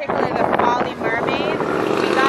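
People's voices talking, the words not clear enough to make out.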